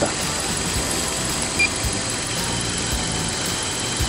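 Car engine idling steadily, running at a settled idle after its fuel injectors were cleaned, with the oxygen sensor cycling normally.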